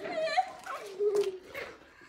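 A woman's high-pitched laughter in short squeals, with one longer, slightly falling note about a second in.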